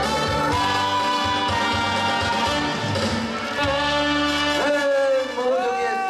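Live stage band of accordion, saxophone, drum kit and keyboard playing sustained closing notes of a song. The band stops about four and a half seconds in, and a voice calls out with rising and falling pitch near the end.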